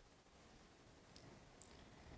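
Near silence with two faint, short clicks about a second and a half in, which likely come from advancing the slide on an interactive whiteboard.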